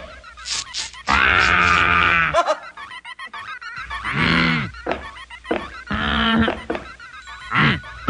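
Cartoon sound effects for animated toys: a run of pitched, call-like squawks and squeaks, the longest a buzzy held call starting about a second in and lasting over a second, then a call that rises and falls near the middle and several shorter ones after.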